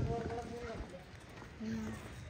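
Indistinct voices of people talking off-microphone, with footsteps on a dirt lane. A short held voice-like tone comes near the end.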